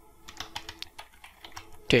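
Typing on a computer keyboard: a quick, irregular run of key clicks as code is entered.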